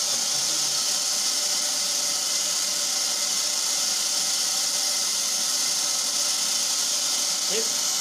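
Steady electric-motor hum and hiss of workshop machinery running without a break, with no distinct knocks or changes.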